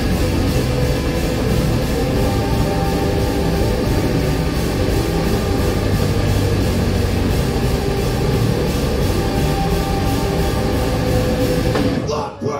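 A live rock band playing loud and without a break: electric guitars over a drum kit with steady cymbal hits.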